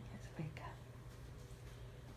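Soft whispering, a brief murmured sound about half a second in, over a low steady hum.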